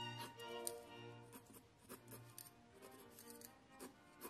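Quiet background music with held notes, over short, quick scratchy strokes of a mechanical pencil on sketch paper, several a second.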